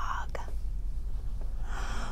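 A quiet pause over a low steady hum, with a small click about a third of a second in and a woman's soft intake of breath near the end.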